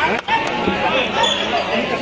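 Woven sepak takraw ball smacked by kicks: one sharp hit at the serve and another about half a second later, over steady crowd chatter.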